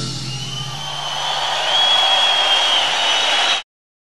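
Concert audience applauding and cheering at the end of a song, with a long high whistle over the clapping, after the band's last sustained notes die away in the first second. The sound cuts off suddenly near the end.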